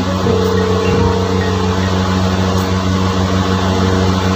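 Steady low hum with a faint, steady higher tone over it for about the first second and a half.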